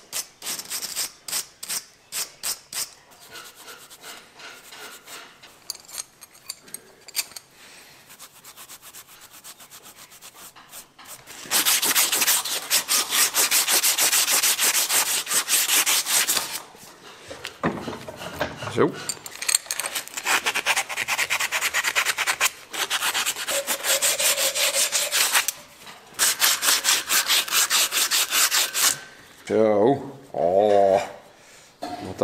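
Abrasive cloth rubbed rapidly back and forth along a small metal pipe clamped in a vise, in several loud bursts of a few seconds each with short pauses between, cleaning the pipe up to bright metal. The first third is quieter, with slower scratchy strokes.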